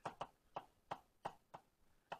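About six faint, sharp clicks, roughly evenly spaced over two seconds.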